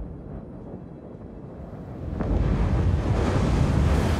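Wind and heavy sea: a steady low rush of noise that swells louder about two seconds in.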